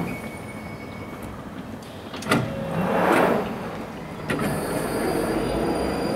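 London Underground 1995 Stock train standing at the platform. A sharp clunk about two seconds in is followed by a swell of air hiss. A second clunk comes about four seconds in, as the doors slide open, and then a steady high whine.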